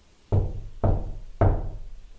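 Three knocks on a wall with the hand, about half a second apart, each a dull thud with a short ring after it, given as an example of the tapping asked for.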